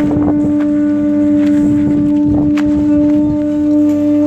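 Hawaiian conch shell trumpets (pū) blown together, sounding one long, steady note held without a break, with a fainter lower note underneath.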